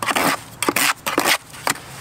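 Trowel scraping and stirring thick, freshly mixed mortar in a plastic bucket: a run of gritty scrapes with three short clicks about half a second apart.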